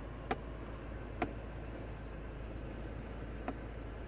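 Quiet SUV cabin: a low steady hum with three faint, sharp clicks, about a third of a second in, just after a second, and near the end.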